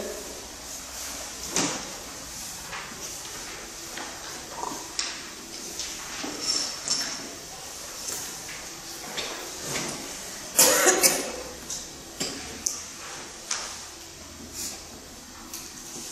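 Marker pen writing on a whiteboard: a run of short scratchy strokes and brief squeaks, with the loudest burst of strokes about ten and a half seconds in.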